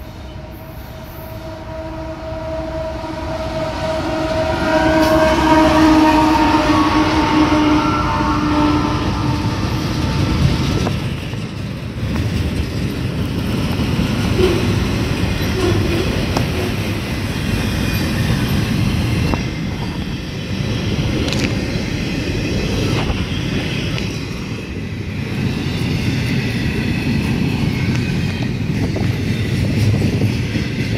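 Freight train locomotive horn sounding a long chord for about eight seconds as the train approaches. After the horn ends, the steady rumble and rattle of the passing freight cars' wheels on the rails carries on.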